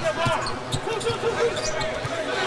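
Game sound from a basketball court in play: short high squeaks of sneakers on the hardwood floor over the steady noise of a large crowd of spectators.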